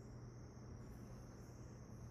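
Near silence: room tone with a faint steady low hum and a faint, steady high-pitched tone.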